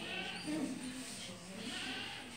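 A person's voice murmuring a soft, wavering, hummed 'mm-hmm'.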